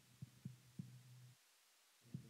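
Near silence: a faint steady low electrical hum with a few soft low knocks, cutting out abruptly about one and a half seconds in.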